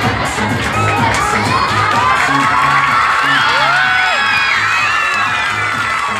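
An audience, many of them children, shouting and cheering over loud dance music with a steady bass beat.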